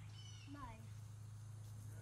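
Schnauzer puppy giving a short, high-pitched whine, over a steady low hum.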